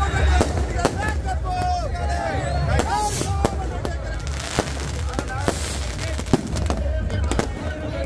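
Firecrackers going off in irregular sharp cracks and pops, with crowd voices shouting over them.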